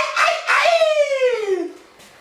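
A person's voice giving one long, howl-like cry that slides steadily down in pitch and then fades. It is a mock call given as the answer to a joke.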